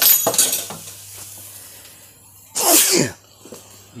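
A person sneezing loudly about two and a half seconds in, with a falling sweep of pitch, after a shorter sharp burst right at the start. The sneezing is set off by the pungent fumes of belacan (shrimp paste) frying in the wok.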